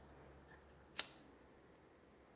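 A lighter struck once: a single short, sharp click about halfway through, otherwise faint room tone.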